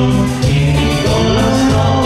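Live band music: a Yamaha keyboard holding steady organ-like chords over an electric bass playing short repeated notes, with a voice singing.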